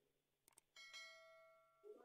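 Near silence with a faint bell-like chime that starts about three quarters of a second in and rings on steadily for about a second.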